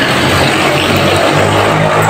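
Steady, loud noise of an engine running nearby, with a low hum underneath.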